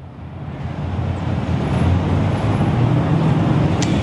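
Steady city street traffic noise, fading up over the first couple of seconds and then holding level.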